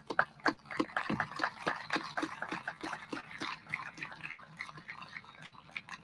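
Scattered audience applause, many separate hand claps picked up faintly, building after about a second and thinning out near the end.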